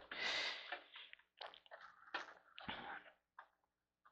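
Faint handling noises from a desktop computer's power-supply wiring bundle being gripped and moved inside an open metal case: a short soft hiss near the start, then a few brief scratchy rustles and light clicks.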